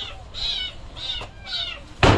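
An animal's short, high-pitched calls, repeated about twice a second.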